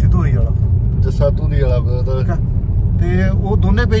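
Steady low rumble of road and engine noise inside a car's cabin, under a man's talking voice.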